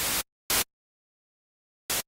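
Unfiltered white noise from Native Instruments Massive's noise generator, triggered in short bursts. One burst cuts off just after the start, a shorter one comes about half a second in, and another starts near the end.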